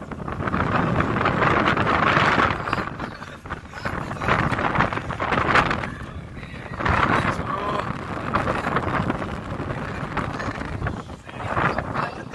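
Wind buffeting the microphone in gusts that swell and fade every second or two.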